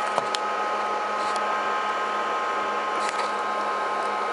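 Steady whir of cooling fans with a constant high whine, from an FM transmitter amplifier test bench running at more than 350 watts output. A few faint ticks near the start.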